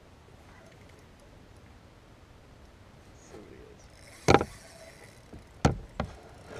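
Two sharp, loud knocks against the kayak hull, about four and five and a half seconds in, after a few seconds of faint background.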